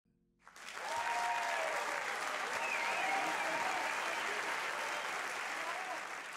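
Theatre audience applauding, fading in within the first second and then holding steady, with a few voices calling out above the clapping.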